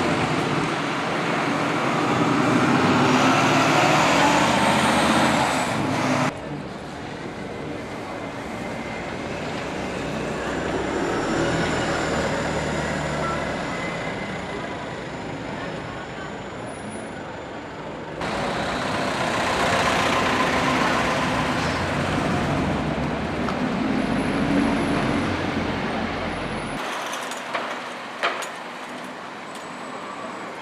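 Diesel buses running through a busy town street amid traffic noise. The sound is cut three times, changing abruptly about six, eighteen and twenty-seven seconds in, with a few sharp clicks shortly after the last cut.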